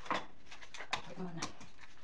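A vacuum cleaner's hose and metal wand being handled while the machine is switched off: three sharp clicks and knocks in two seconds. A short low voice sound comes between the last two.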